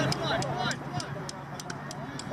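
A voice says a word with a short laugh, then the sound drops to a quieter outdoor background of faint distant voices over a low steady hum, with several brief, light clicks in the second half.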